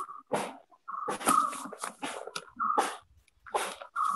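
Stylus scratching across a tablet screen in a quick run of short strokes with brief gaps, as words are handwritten.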